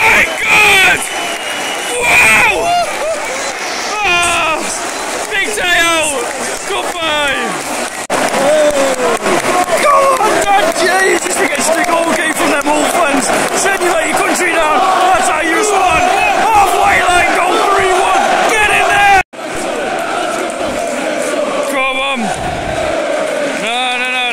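Football crowd in a packed stand singing and shouting after a home goal, many voices at once with nearby fans yelling over the mass of sound. The sound cuts out sharply for an instant about nineteen seconds in, then the crowd carries on.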